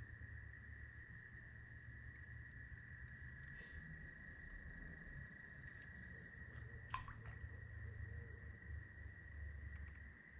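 Faint night ambience: a steady high-pitched drone with a low rumble underneath, and a single sharp click about seven seconds in.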